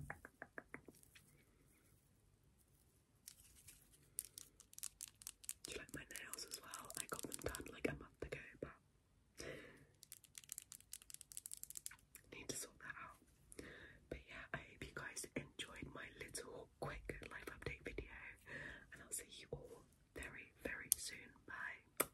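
Soft, close-up ASMR whispering mixed with rapid runs of small clicks and taps, after a brief quiet pause near the start.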